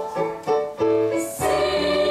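Piano accompaniment playing single notes, then a girls' choir comes in about a second and a half in, singing together over the piano.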